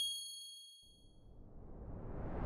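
A high, bell-like ding from an outro sound effect, struck just before and ringing out, fading away by about halfway. Then a rising whoosh builds.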